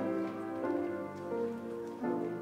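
Piano playing slow instrumental music, a new chord sounding about every two-thirds of a second.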